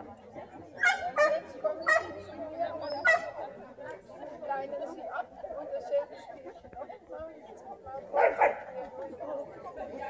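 A dog barks about four times in the first three seconds and twice more near the end, over people chatting.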